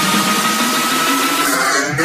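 Electronic dance music DJ mix at a build-up: a noise riser with a thin tone slowly climbing in pitch, the bass dropped out. About one and a half seconds in, the treble is filtered away.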